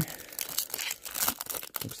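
A baseball trading card pack's crimped wrapper being torn open and crinkled by hand: an irregular run of crackles.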